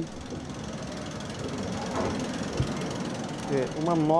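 Steady city background noise with a faint rattle in it, as of distant traffic heard from high above the streets; a man starts speaking near the end.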